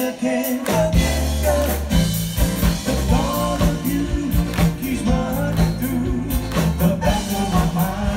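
A soul vocal group singing live with a backing band of electric guitar, bass and drum kit. The bass drops out briefly at the start and comes back in under a second.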